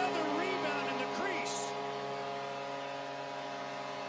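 Arena goal horn sounding one long, steady chord over a cheering crowd, the signal of a home-team goal. A few shouts rise out of the crowd in the first second or so.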